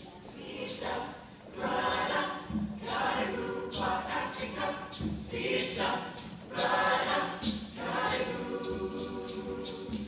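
Mixed youth choir singing together in many voices, in short rhythmic phrases with crisp consonants.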